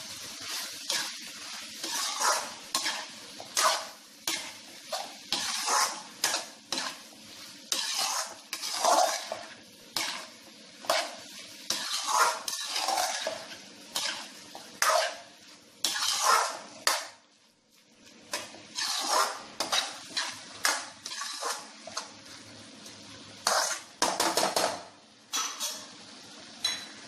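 Metal spatula stirring chopped vegetables in a metal kadhai (wok), scraping against the pan in a long run of irregular strokes, with a brief pause about two-thirds of the way through.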